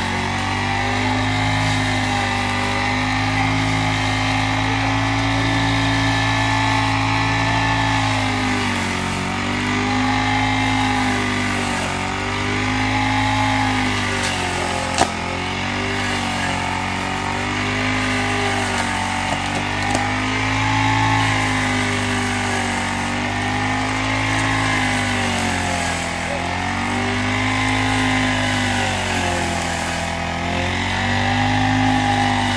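Backpack brush cutter's small petrol engine running at high speed. From about a quarter of the way in, its pitch dips and recovers every two to three seconds as the blade is swept through the grass under load. There is one sharp click about halfway through.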